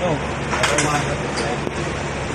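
Indistinct talk of several people over a steady low hum, with a few short sharp sounds about a third and two-thirds of the way through.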